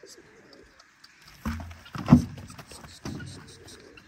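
Pigeons cooing in a few low calls, with one sharp, louder sound just after two seconds in.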